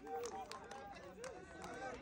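Several people talking over one another in the background, a crowd murmuring after cheering, with scattered hand claps.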